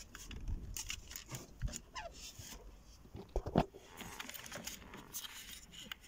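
Small plastic clicks, scrapes and rattles of hands working a car door's window-switch panel and its plastic wiring connector, with a louder knock about three and a half seconds in.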